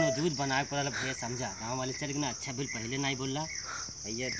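Steady high-pitched chirring of crickets, with a man's low muttering voice under it.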